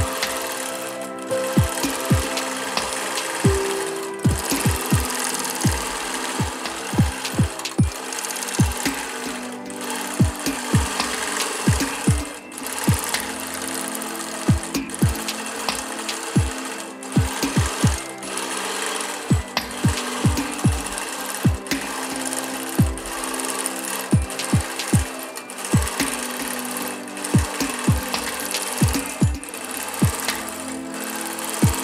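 BERNINA Q24 longarm quilting machine stitching steadily through free-motion quilting, with music playing over it.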